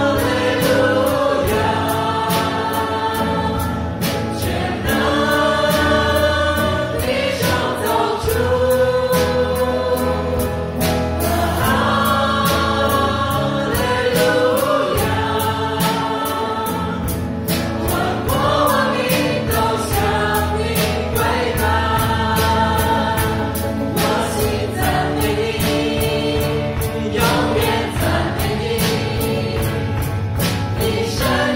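Live worship band performing a song: male and female singers together at microphones, backed by electric guitar, keyboard and drums keeping a steady beat.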